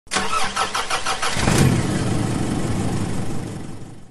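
A car engine being started: the starter cranks in quick even pulses for about a second and a half, then the engine catches and runs. It fades out near the end.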